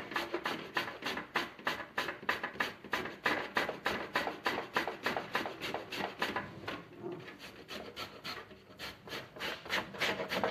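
Green papaya, skin on, being grated on a stainless-steel box grater: a quick rasping stroke about four times a second, a little quieter for a couple of seconds near the end.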